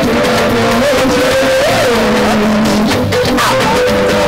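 Live band music with guitar lines, loud and continuous.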